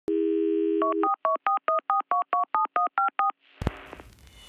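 Telephone dial tone for about a second, then a quick run of about a dozen touch-tone dialing beeps, each a short two-note tone, and a sharp click near the end.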